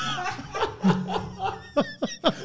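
Two men laughing: a run of short snickering bursts.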